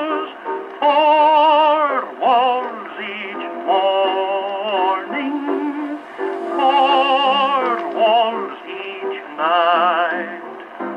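An Edison C250 Chippendale cabinet phonograph playing an electrically recorded Edison Diamond Disc of a tenor singing with piano. The sustained sung notes have a wavering vibrato, with short breaks between phrases. The sound is thin and has no bass.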